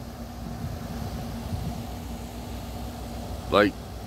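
A steady low machine hum with one constant tone, running under a pause in speech.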